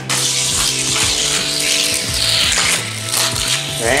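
A die-cast toy car running fast along plastic track and through the loops, starting suddenly right after release, over background music with a steady bass line.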